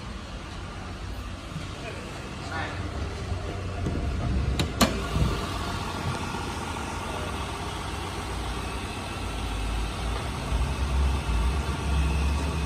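2010 Nissan Maxima's 3.5-litre V6 engine idling steadily, with a sharp click about five seconds in.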